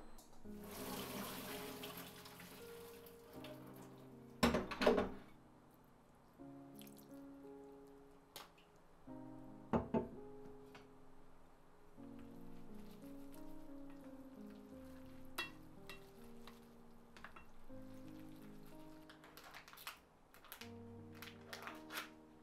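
Soft background music over kitchen sounds: about a second in, a couple of seconds of running water, as when cooked green tea soba is rinsed in a colander. Then comes a sharp clatter of kitchenware, and a second one some five seconds later.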